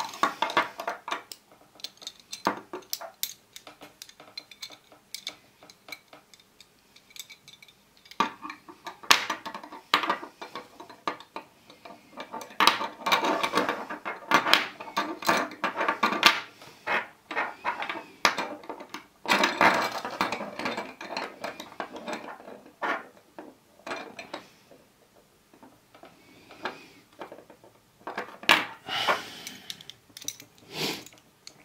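Cast metal pieces of a Hanayama Cast Marble puzzle clicking, clinking and scraping against each other as they are fitted together and turned by hand. Sharp single clicks alternate with denser stretches of rattling, the busiest about a third of the way in and again past the middle.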